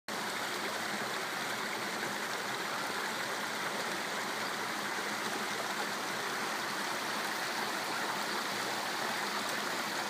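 Shallow stream running over rocks: a steady, even rush of water.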